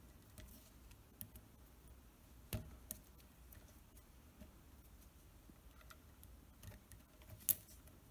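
Faint clicks and taps of a multimeter test probe and fingers handling the motor's brass terminal studs, over quiet room tone. The sharpest click comes about two and a half seconds in, with another just after and a last one near the end.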